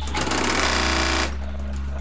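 Industrial sewing machine running in one fast burst of stitching that starts just after the beginning and stops about a second later, over a steady low hum.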